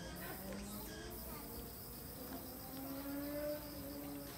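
Insects chirring steadily and faintly in the surrounding forest.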